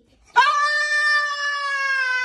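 French bulldog giving one long, steady, high-pitched howl that starts about half a second in and is still held at the end.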